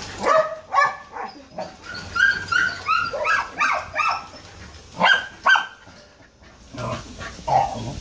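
Small dogs barking in short, high-pitched yips, several in quick runs, with a brief lull about six seconds in before the barking picks up again.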